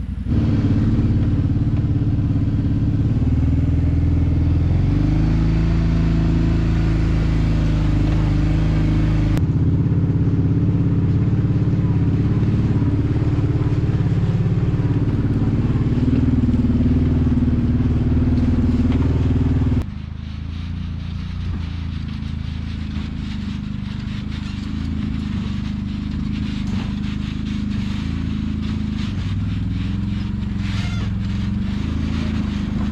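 Four-wheeler (ATV) engines running as the machines are ridden over a rough, rocky trail. The sound changes abruptly twice and is quieter over the last third.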